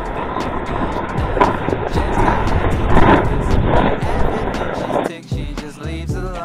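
Sled sliding fast down a packed-snow slope: a loud, continuous scraping hiss with a few stronger swells that stops about five seconds in.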